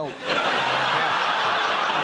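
Studio audience laughing loudly and steadily, breaking out about a quarter second in, right after a punchline.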